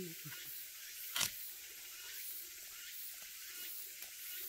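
One sharp knock about a second in, as a hooked sickle blade strikes the trunk of a Chinese cork oak to cut into its bark for peeling, over a steady high hiss.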